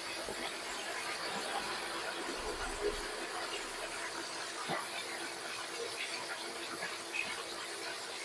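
Braising sauce simmering in pans on an induction cooktop: a steady soft hiss of bubbling and sizzling, with a couple of faint clicks.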